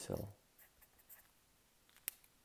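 A fine-tip felt pen writing on a sheet of paper: faint scratching strokes.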